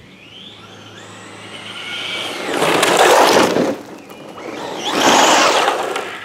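Traxxas Deegan rally RC car with a Castle brushless motor: a rising electric motor whine as it speeds up, then two loud stretches of the tyres scrabbling and sliding on loose sand and gravel, about three and five seconds in.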